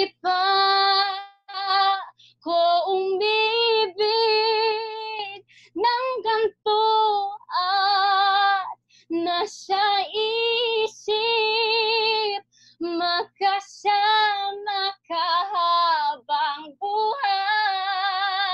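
A young woman singing a Tagalog ballad unaccompanied, holding notes with a wide vibrato. The phrases are cut apart by abrupt drops to silence.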